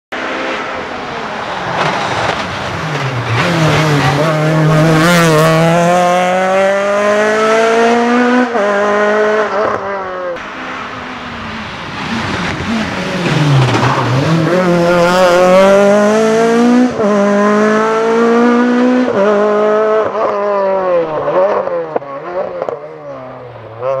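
VW Golf III KitCar rally car's four-cylinder engine revving hard under full throttle, its pitch climbing through the gears with sharp drops at the shifts. It slows to a low pitch midway, climbs again, then falls away as the car passes, with a few short throttle blips near the end.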